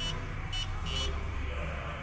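Three short electronic key beeps from a Step Automation Rock 15+ CNC controller's touchscreen as numbers are pressed on its on-screen keypad, about half a second apart, over a steady low hum.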